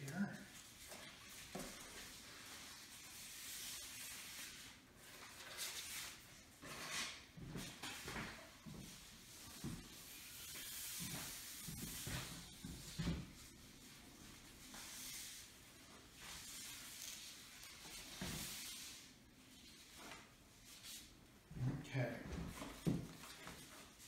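Long strips of coated pneumatic cloth rustling and sliding over a cutting mat as they are handled, in faint intermittent swishes with a few soft knocks.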